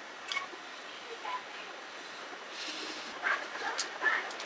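Faint, scattered crunches and crinkles from eating a crisp chocolate biscuit, with a snack wrapper rustling now and then.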